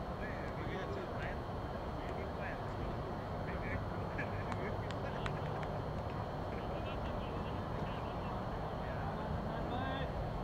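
Open-air ambience over a steady low hum, with distant voices and scattered short calls.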